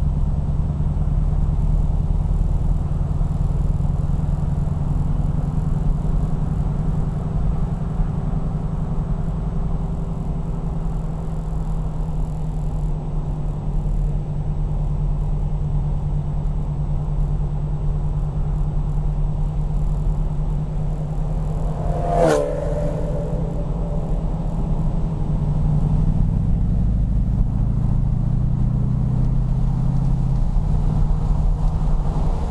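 Chrysler 440 cubic-inch (7.2 L) V8 of a modified 1974 Jensen Interceptor, heard from inside the car, running with a deep, steady throb at a cruise up a mountain grade; over the last few seconds its note rises as it picks up speed. A single sharp click about two-thirds of the way through.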